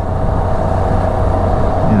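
Can-Am Spyder RT-S roadster cruising at a steady speed: a constant engine hum with a steady drone, under a rush of wind noise.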